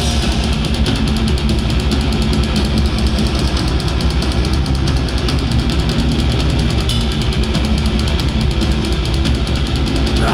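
Metal band playing live at full volume: rapid, densely packed drumming under distorted guitars and bass.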